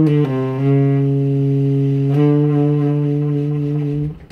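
Selmer Mark VI tenor saxophone, played with an Otto Link mouthpiece and an Echo Master hard-rubber ligature, playing a short note that steps down to a low note held for about three seconds. The held note stops abruptly at the end.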